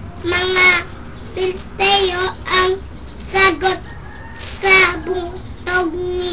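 A young child's voice singing a string of short syllables on a nearly level pitch, each held briefly with small gaps between them.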